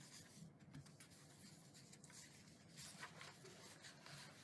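Near silence: faint room tone with light rustling, slightly stronger a little before three seconds in.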